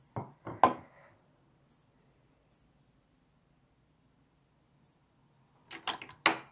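A ceramic plate set down on a wooden table with two sharp knocks, a few faint ticks, then a quick cluster of clinks and knocks of tableware near the end.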